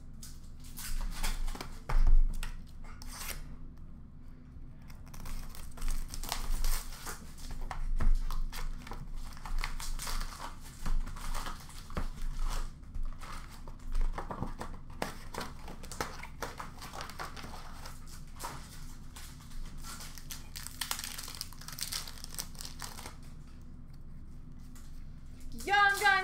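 Hockey card packs and boxes being handled and opened: crinkling and tearing of the wrappers, with a few sharp knocks as cards and boxes are set down. It goes quieter near the end.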